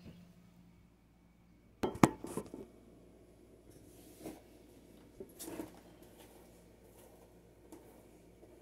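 Hard household objects clattering and clinking against a countertop as they are handled and set down: a loud burst of clatter about two seconds in, then a few lighter knocks.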